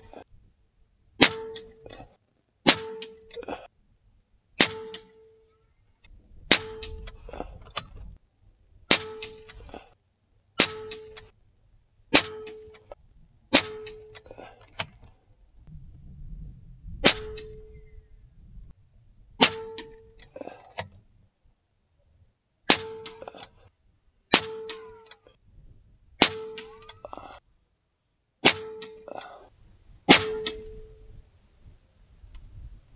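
Evanix AR6k .22 PCP air rifle fired again and again, a sharp crack every one and a half to two seconds. Each shot is followed by a short metallic ring and a light click. There is a pause of about three seconds midway.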